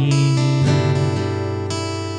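Acoustic guitar with a held note for the first half second, then a chord strummed about half a second in and left to ring, slowly fading.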